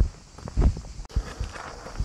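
A few footsteps as someone walks off, heard as separate low thuds, with a sharp click about a second in.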